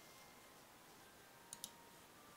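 Near silence with two quick computer mouse clicks, one just after the other, about a second and a half in.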